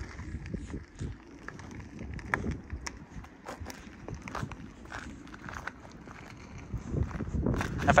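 Scattered faint crunches and clicks as a Tesla Model X rolls slowly forward under Summon with no one inside: tyres on gritty asphalt, mixed with footsteps on the pavement. The sounds grow louder near the end.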